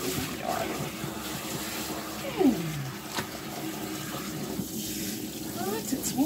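Water spraying steadily from a hose spray nozzle onto a dog and into a grooming tub, being run through to warm it up before shampoo goes in. A short falling voice sound about two and a half seconds in.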